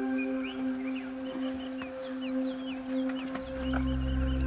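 Ambient background music of sustained, held tones, with many short bird chirps over it. A deeper bass layer comes in near the end.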